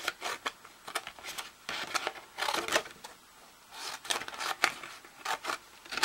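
Scissors snipping through scored cardstock: a series of short, uneven cuts as the blades close on the card.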